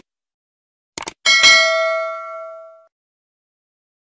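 Two quick click sound effects about a second in, then a bright bell ding that rings out and fades over about a second and a half: the stock sound of a subscribe button being clicked and its notification bell ringing.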